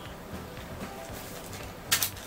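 Quiet rustling of a plastic-wrapped toy packet being handled inside a cardboard meal box, with one short, sharp crinkle near the end as the packet is pulled out.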